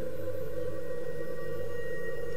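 Ambient background music: a steady drone of long held tones with no beat.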